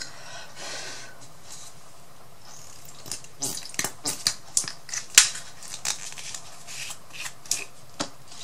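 Tabletop handling noises: a small plastic paint bottle picked up, its cap opened and set down on the table, heard as a run of short sharp clicks and taps in the second half after a faint rustle at the start.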